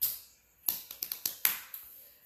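A few light taps and clicks of small objects being handled: one at the start, then a quick cluster about a second in.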